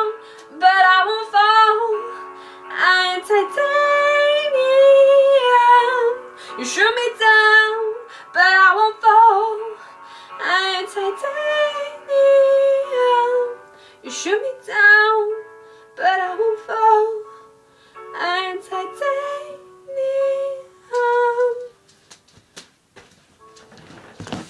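A woman singing in a belted style, with sliding, wavering notes and long held tones. The singing stops about 22 seconds in.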